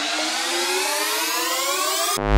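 Psytrance breakdown: the kick drum and bassline have dropped out, leaving a synthesizer sweep of several tones rising together in pitch.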